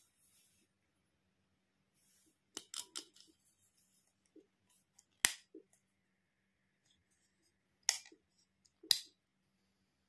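Sharp clicks and taps of hard plastic toy doctor-kit pieces being handled: a quick run of clicks a few seconds in, then single clicks a few seconds apart, the loudest two near the end. The last clicks come as a toy penlight is switched on.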